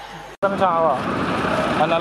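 A person's voice speaking over steady street traffic noise, starting abruptly at a hard edit cut just under half a second in.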